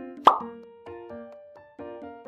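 Light background music of short repeated keyboard chords. About a quarter second in, a single loud cartoon 'plop' sound effect cuts in over it.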